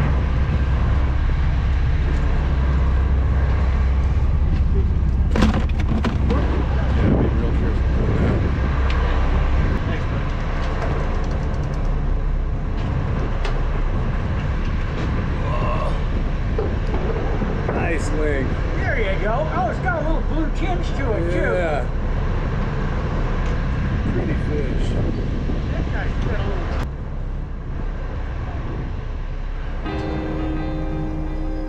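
Steady low rumble of a charter fishing boat's engine, easing slightly about ten seconds in, under indistinct chatter of anglers on deck.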